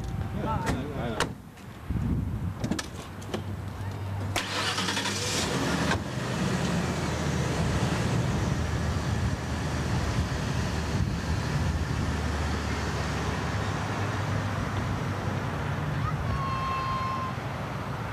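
Ford LTD Crown Victoria sedan's engine running steadily as the car pulls away, with voices and a few sharp clicks near the start.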